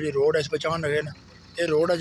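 A person talking in short phrases, with a brief pause in the middle.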